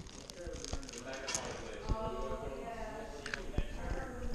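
A clear plastic bag of M&M candies crinkling as it is handled close to the microphone, with a few sharp knocks and a voice in the background.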